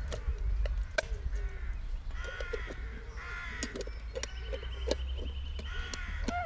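Several bird calls in short groups, about two and three and a half seconds in and again near the end, over a few sharp clicks of a metal mess tin being handled as a gas canister and stove are packed into it.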